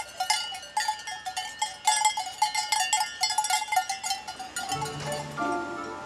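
Many cowbells worn by a herd of cattle clanging irregularly at several different pitches. Background music comes in near the end.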